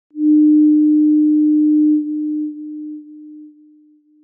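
A single steady electronic tone at one pitch, like a sine wave, starting loud and dying away in steps over the last two seconds.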